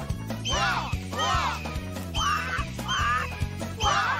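Cartoon hawks crying over background music with a steady beat. The calls come about once a second and each rises and then falls in pitch; near the end several overlap, as from a flock.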